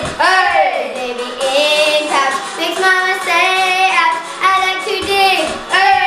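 A child singing a melody with no clear words, the pitch swooping up and down in long glides near the start and again near the end.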